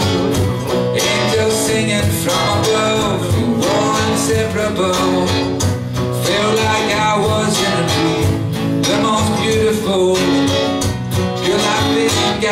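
Live acoustic music: two acoustic guitars strummed in a steady rhythm.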